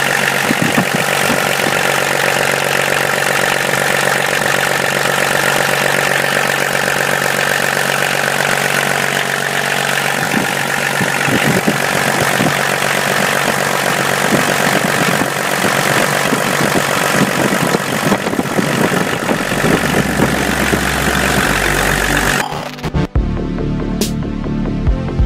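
BMW 324d's M21 straight-six diesel engine idling steadily, heard close to its Bosch rotary injection pump: it is running now that the air has been bled out and fuel reaches the pump. Electronic music comes in near the end and takes over.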